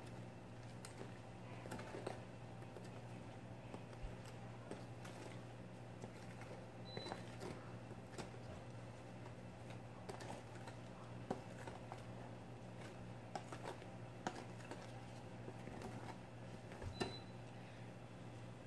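Faint, irregular clicks and scrapes of a spatula spreading white grout over broken mirror glass.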